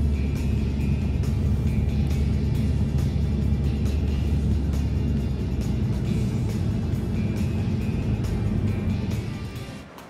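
Steady road and engine noise inside a moving taxi on a highway, with music playing along; both fade out about a second before the end.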